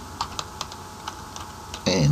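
Typing on a computer keyboard: a handful of separate keystrokes. A voice starts up near the end and is the loudest sound.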